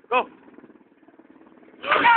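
A person jumping into the water of a deep stone-walled well, hitting it with a loud splash near the end, with shouting. Before it comes a short shout, then a low steady hum.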